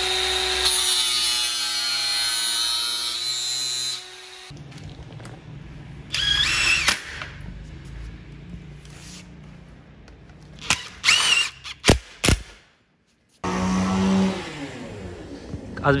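Angle grinder running and cutting through a hard aluminium profile for about four seconds, its pitch sagging slightly under load once the cut starts. A few short, high-pitched scrapes and clicks follow.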